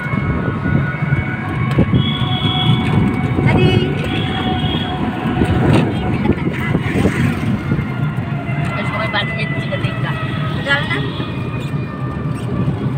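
Wind buffeting the microphone and steady road rumble while riding in an open-sided rickshaw, with faint voices now and then.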